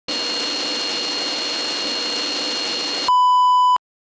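Steady static-like hiss with faint high steady tones for about three seconds, then a loud flat electronic beep lasting under a second that cuts off abruptly into silence: a title-card sound effect of noise and test-tone beep.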